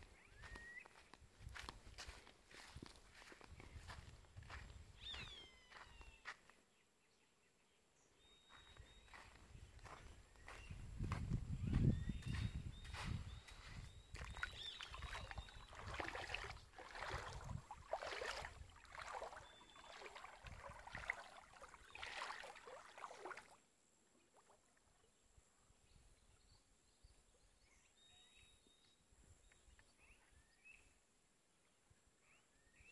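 Footsteps rustling through dry grass and brush, with a low buffeting rumble about ten to thirteen seconds in and a few short high bird chirps. The steps stop about three-quarters of the way through, leaving faint birdsong.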